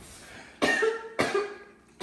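A woman coughing twice, about half a second apart, from a bout of flu.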